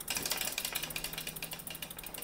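Rear bicycle hub's freehub ticking in a rapid, even stream of small clicks as the wheel coasts, spun by hand in the work stand.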